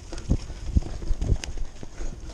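Mountain bike rattling and knocking as it rides fast over a bumpy dirt trail, picked up by a camera mounted on the handlebars: dull thumps about every half second, with a sharp click about a second and a half in.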